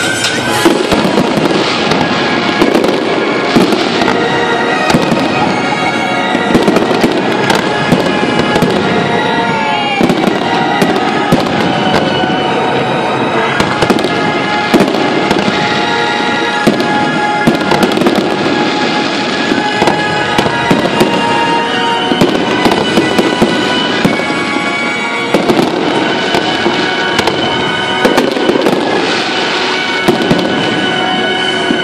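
Fireworks display: aerial shells bursting in a rapid, continuous string of loud bangs and crackles.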